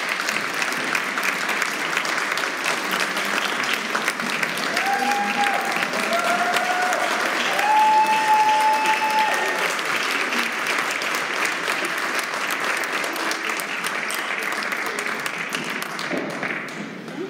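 Audience applauding steadily, with a few voices cheering over the clapping from about five to nine seconds in; the applause thins out near the end.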